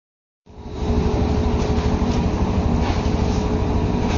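Steady low mechanical rumble with a constant hum in it, starting suddenly about half a second in.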